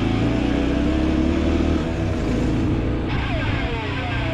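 RX3 adventure motorcycle's engine running under way at low speed; about three seconds in its pitch falls as the bike slows for a corner.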